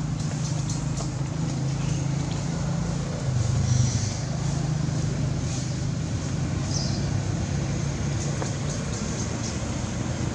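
Steady low hum of a running engine, swelling briefly a few seconds in, with faint high ticks and chirps over it.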